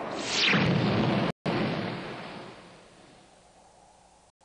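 Cartoon sound effect of an energy blast and explosion: a falling zap, then a loud blast whose rumble dies away over the next couple of seconds.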